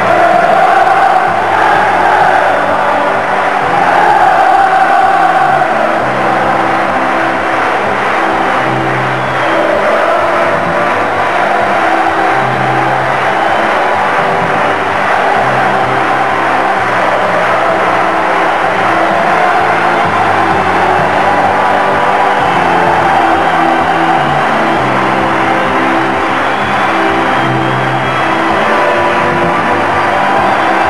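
Music playing continuously, with held bass notes that change pitch every second or two under a wavering melody line.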